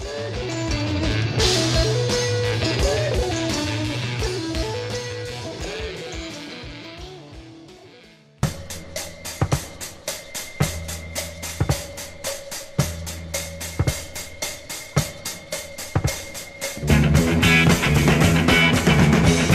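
Recorded rock music. A guitar line fades out over the first eight seconds; after a brief gap a new track starts abruptly with a drum beat and guitar, and the full band comes in near the end.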